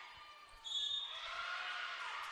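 Basketball bouncing on a hardwood gym floor during play. About half a second in, the hall noise rises and a brief high squeak sounds.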